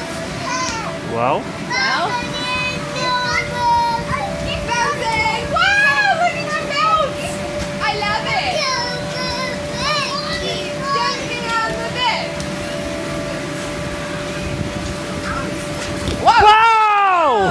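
Children playing and calling out, their high voices overlapping in chatter and squeals that thin out after about twelve seconds, over a faint steady hum.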